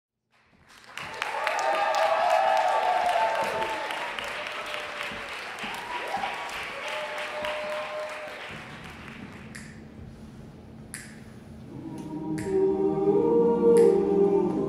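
Audience applause and cheering fade, and a men's a cappella group begins a song: a low sustained hum enters, then chords of many voices build and grow louder, with sharp clicks about every second and a half.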